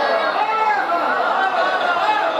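A man's voice speaking into a microphone, with the chatter of a crowd behind it.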